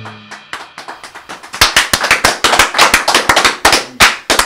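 A Ludwig drum kit's last notes, a cymbal ringing out with a few light hits, then from about one and a half seconds in a few people clapping quickly and irregularly.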